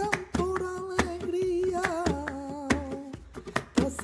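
Male flamenco singer singing a line of tangos de Cádiz without guitar, in a wavering, ornamented voice, over a steady beat of hand claps (palmas). The phrase steps lower about halfway through and breaks off shortly before the next one begins.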